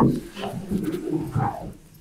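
A knock at the start, then muffled, indistinct low voices in a small room.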